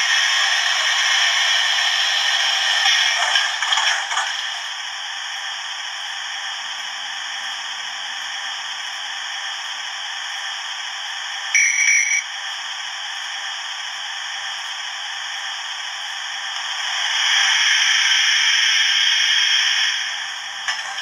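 Hornby TTS steam sound decoder in an OO gauge Princess Coronation model, heard through its small speaker: a steady hiss that swells in the first few seconds and again near the end. About halfway through there is a brief high tone.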